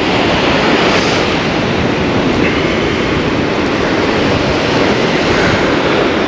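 Ocean surf breaking on the shore with wind buffeting the microphone: a steady, loud rushing noise with a gusty low rumble.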